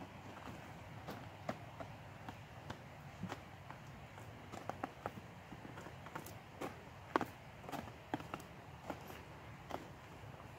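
Footsteps of boots on snow-covered logs and snowy ground: slow, uneven steps, each a soft crunch or knock.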